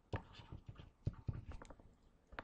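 Stylus writing on a tablet or pen-screen: a quick, irregular series of light taps and clicks as a number is written.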